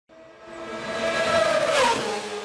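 A high-revving racing engine passing by: a steady high engine note grows louder, then drops sharply in pitch near the end as it goes past.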